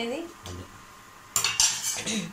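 Steel spoon scraping and clinking against a stainless steel pan while turning dumplings frying in oil. There is a single short knock about half a second in, then a louder run of metallic scrapes and clinks near the end.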